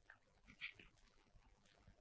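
Near silence, with a faint brief sound about half a second in.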